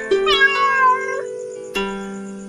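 A cat meows once, a single bending call of about a second in the first half, over background music of steady held notes.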